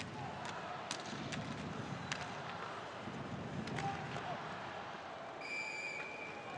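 Live ice hockey game sound: sharp clicks of sticks and puck on the ice over a steady arena crowd murmur. Near the end a referee's whistle blows to stop play.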